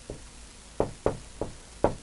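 Marker tip tapping against a whiteboard while a word is handwritten: about five short, sharp taps at uneven intervals.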